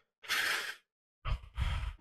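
A person sighing: a short breathy exhale about a quarter second in, followed by a second breathy sound in the latter half.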